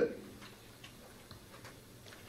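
Faint, short clicks, about five in all at two to three a second, of keys being tapped on a laptop at the pulpit.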